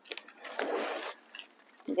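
A short rustle of leaves and potting soil as hands settle a large leafy plant into a pot, lasting under a second, with a few light clicks before and after.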